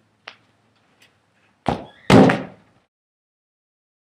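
A soccer ball kicked on a concrete yard: a sharp thud from the kick, then, about half a second later, a louder bang as the ball hits something hard, dying away over about half a second.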